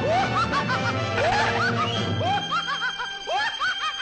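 Cartoon background music with a character snickering in short, repeated giggles over it.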